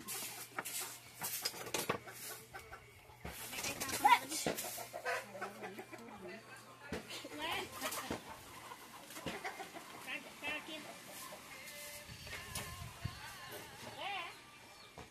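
Backyard chickens clucking in short, scattered calls, with a few sharp knocks in the first couple of seconds.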